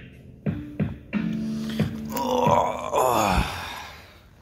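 Edited-in intro music: held synth tones with a few short bass hits that drop in pitch, building about two seconds in to a dense swirl of sweeping tones, then fading out near the end.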